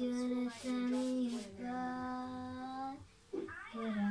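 A young girl singing, holding three long notes at nearly the same pitch one after another, then a short pause and a brief phrase near the end.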